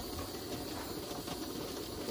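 Pressure canner heating on the stove, a steady low rushing hiss of water boiling inside as pressure builds under the regulator weight.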